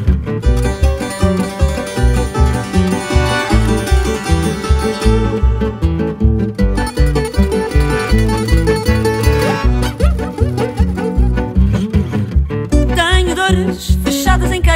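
Instrumental music with plucked strings over a steady, regular bass beat.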